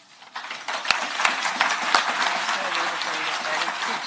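Audience applauding, the clapping starting a moment in and carrying on steadily.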